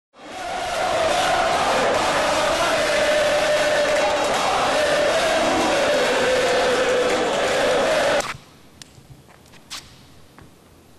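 Large crowd of football supporters chanting together, many voices holding one sung line. It cuts off suddenly about eight seconds in, leaving a quiet space with a few light taps.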